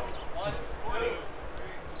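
Indistinct voices of several people talking, over low thuds.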